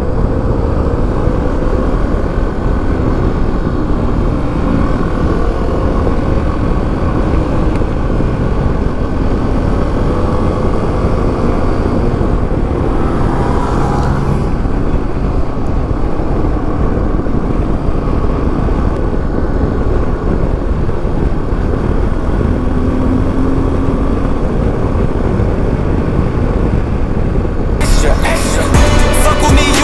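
Suzuki V-Strom 250's parallel-twin engine running at a steady cruise, its note drifting slowly up and down, under a heavy, steady rush of wind on the camera microphone. About halfway through, another motorcycle passes close alongside.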